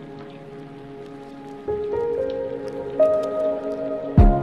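Background music of long held notes that step to new pitches, louder from about a second and a half in.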